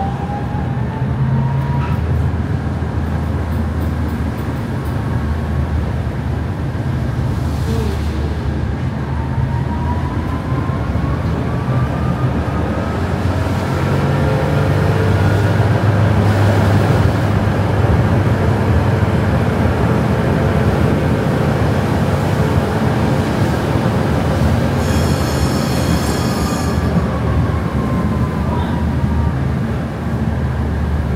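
Tatra T3 tram heard from inside while running: a steady low hum and rolling rail noise, with the electric traction motor whine rising in pitch at the start and again around ten seconds in, then falling near the end as it slows. A brief high squeal comes a little before the end.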